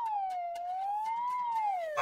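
Comic whistle-like sound effect gliding in pitch: it rises, dips, rises again and then slides down near the end. It marks the Good-O-Meter's needle swinging over toward BAD.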